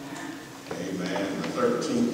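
Speech: a man's voice speaking over a microphone.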